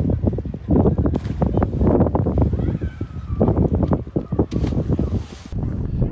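Wind buffeting the microphone in gusts, with snatches of people's voices, and a short burst of hiss a little past the middle.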